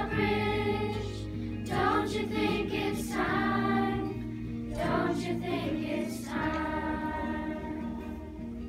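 Children's choir singing a slow song in phrases with short breaks between them, over held low accompaniment notes.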